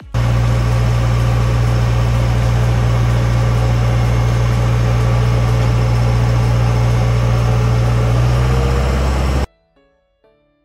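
Motorboat running at speed: a steady low engine drone under a loud rush of wind and water. It cuts off suddenly near the end.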